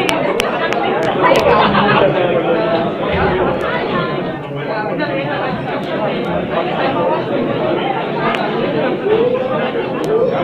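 Crowd of spectators in a gym hall talking over one another, a steady babble of many overlapping voices with no single clear speaker.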